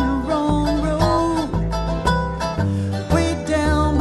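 Live bluegrass band playing: upright bass notes about every half second under plucked acoustic guitar, mandolin and banjo, with held melody notes above.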